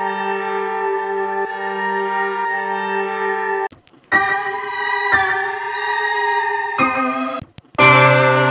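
Software synth keys presets in Arturia Analog Lab auditioned one after another: a held chord plays for about three and a half seconds and cuts off, then a chord in a different keys sound, a brief third sound, and a fourth that starts near the end, each switch a sudden change of tone.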